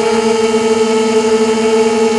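A QAV250 quadcopter's four Lumenier 2000 kV brushless motors spinning Gemfan 5x3 propellers in steady cruise: a loud buzzing whine holding nearly one pitch, heard through the FPV video downlink's audio.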